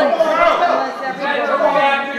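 Several people talking over one another, their words indistinct; no other sound stands out.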